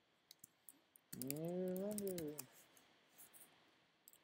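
Light clicks from a computer mouse and keyboard while a file is exported. Over the clicks, a wordless hummed voice is held for about a second and a half, its pitch rising slightly and then falling.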